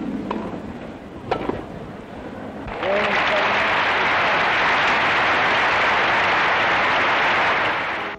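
Spectators at a grass-court tennis match applauding the end of the match: a steady, loud wash of clapping sets in suddenly about three seconds in. Before it the background is quieter, with two sharp knocks.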